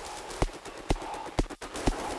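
Sparse electronic music: a steady percussive pulse of sharp clicks with low thumps, about two a second, over a sustained synth layer.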